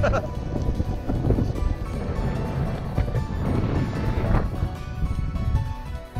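Background music with a steady run of sustained notes, over uneven low wind rumble on the microphone of a moving bike camera.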